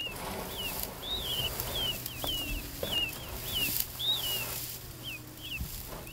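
Attwater's prairie-chicken chicks peeping: a quick, uneven series of short, high, down-slurred peeps, two or three a second, with a couple of longer ones.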